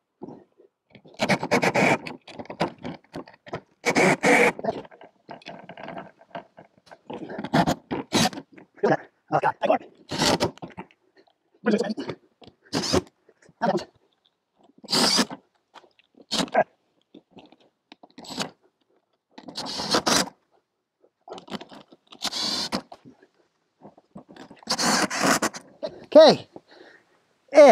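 Cordless drill driver run in repeated short bursts, driving screws through wet sealant into the fiberglass roof.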